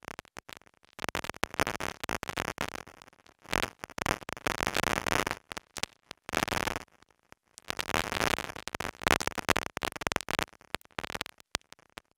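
Choppy, garbled noise from a breaking-up phone connection, cutting in and out in irregular bursts with short gaps: the call line is failing.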